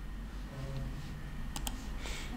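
A quick cluster of computer clicks about one and a half seconds in, over a low steady hum.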